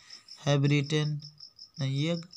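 A man speaking Hindi in two short phrases over a steady, high-pitched chirp that pulses evenly about seven times a second.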